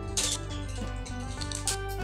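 Background music with sustained notes, with a few light clicks of a colored-pencil case being handled, one near the start and a couple near the end.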